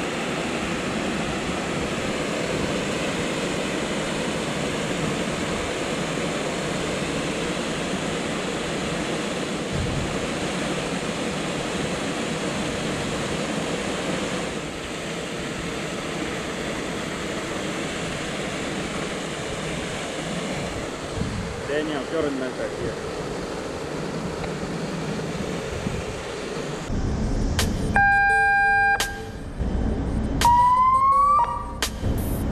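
Steady rushing noise of a tanker's deck fire foam monitor jetting foam-water, with wind on the open deck. In the last few seconds a loud, steady electronic alarm tone comes in from the engine-room signal alarm column's horn.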